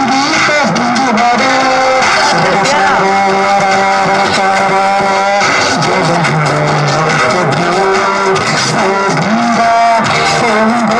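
A man singing into a microphone, amplified, over backing music, holding some notes for a second or more.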